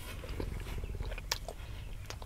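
Close-miked chewing of a ham, egg and cheese breakfast sandwich: small wet mouth clicks and one sharper click a little past halfway, over a low steady rumble.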